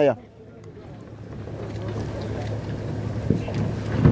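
Wind rushing on the microphone, building steadily louder over a few seconds, with a faint steady low hum underneath.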